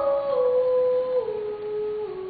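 A woman singing, holding long notes that slide downward in pitch in a few steps, with soft accompaniment underneath.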